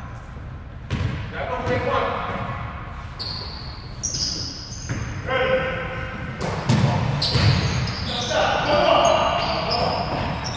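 A basketball bouncing several times on a hardwood gym floor, with players' voices calling out indistinctly, echoing in a large gym.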